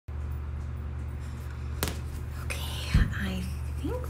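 A steady low hum with a sharp click a little before halfway, then a loud thump about three seconds in, made close to a phone microphone resting on the floor. A woman's voice makes a brief murmur and hum near the end.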